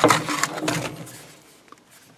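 Cardboard box and plastic packaging of a new Zippo lighter handled by hand, a burst of rustling and clicking that dies away about a second in.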